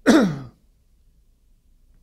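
A man's short sigh, about half a second long, falling in pitch.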